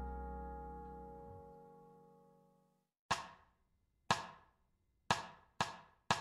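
A held keyboard chord at the end of a jazz backing track fades away over the first two seconds. After a second of silence, a wood-block-like count-in at 120 BPM begins: two clicks a second apart, then clicks half a second apart, counting the band in.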